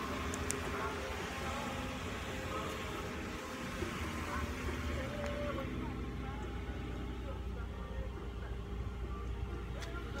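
Steady low rumble of background noise, with faint indistinct voices in the background.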